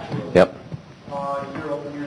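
Speech only: a man says "yep", followed by quieter talking in a room.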